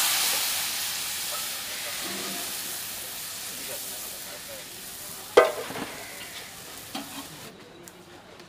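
Yellow lentils and their liquid poured into hot oil in a large iron wok, bursting into a loud sizzling hiss that fades gradually. A metal ladle knocks against the wok about five seconds in, and more lightly near seven seconds.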